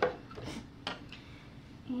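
A light knock about a second in, with quiet handling noise around it, as paper-crafting tools are moved and set down on a countertop.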